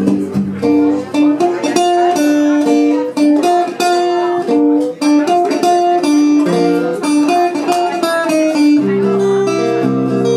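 Solo acoustic guitar playing an instrumental break in a country song: a melody of single picked notes over bass notes, moving to fuller, ringing chords about nine seconds in.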